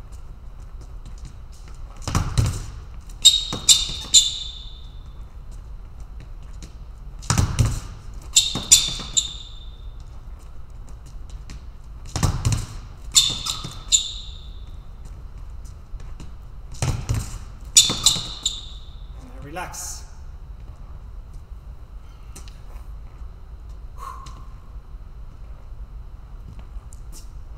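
Fencing footwork in sneakers on a hall floor: a heavy foot stamp of a lunge about every five seconds, each followed by a quick cluster of high sneaker squeaks as the fencer recovers and retreats. Four such rounds, ending about twenty seconds in, with a hall echo.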